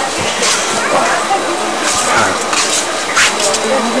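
Indistinct voices of people talking at an outdoor bar, over a steady hiss of background noise with a few short louder hissing bursts.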